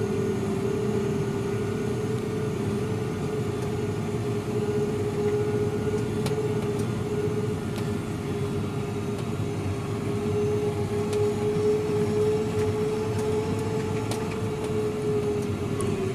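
Fendt tractor running steadily, heard inside the cab: an even mechanical drone with a steady whine held at one pitch.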